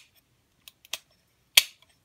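Sharp clicks and ticks of a metal switch cover plate and a plastic electrical box being handled and fitted together. A few light ticks come first, then one loud sharp click about one and a half seconds in.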